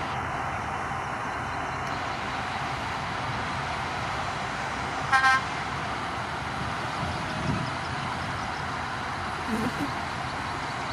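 Shantui DH17C2 crawler bulldozers' diesel engines running under load as they push mud, a steady noisy rumble, with a short vehicle-horn toot about halfway through.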